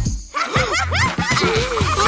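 Cartoon characters giggling and snickering in quick, rising-and-falling bursts over a background music track. The laughter starts about half a second in, after a brief dip in the sound.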